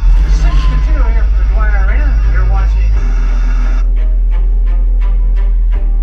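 Hockey broadcast sound playing from a television: voices without clear words over a steady low hum. About four seconds in it gives way to music with a steady beat.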